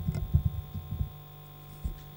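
A lectern microphone being handled, giving a quick cluster of low bumps in the first second and one more thump near the end, over a steady electrical hum from the sound system.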